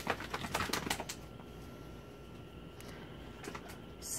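A quick run of light clicks and taps through about the first second, thinning to a few scattered ticks over a quiet background.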